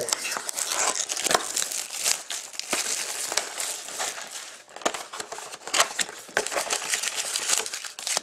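Plastic shrink wrap being torn off a trading-card box and crumpled in the hands, a dense crinkling with many sharp crackles.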